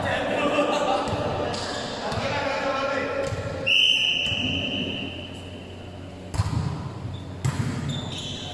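A referee's whistle blown once in a sports hall, a sudden high blast about halfway through that trails off in the hall's echo, signalling the serve. Near the end, a volleyball bounces twice on the court floor with two heavy thuds.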